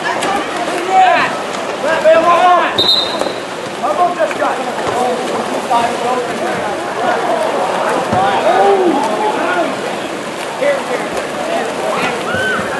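Water polo players splashing and churning the pool water, with many voices shouting and calling out over it. A short, high referee's whistle blast sounds about three seconds in.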